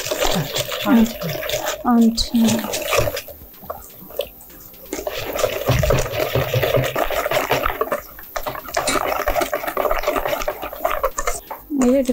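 A whisk beating thick batter in a stainless steel bowl, in rapid scraping strokes. It pauses for a moment about three seconds in, then runs on.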